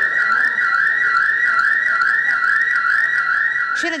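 Electronic alarm sounding continuously: a loud, high-pitched warbling tone that wobbles about three times a second.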